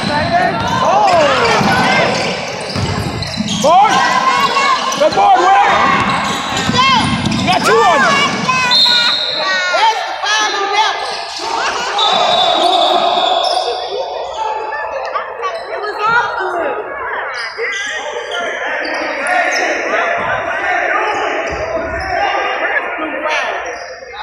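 Basketball game sounds on a hardwood gym court: the ball bouncing on the floor, sneakers squeaking and voices calling out. Two short, steady, high whistle tones come about 9 and 12 seconds in, most likely the referee's whistle.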